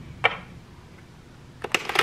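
Tarot deck being riffle-shuffled by hand: a single soft click about a quarter second in, then a quick run of card-edge clicks near the end as the two halves are riffled together.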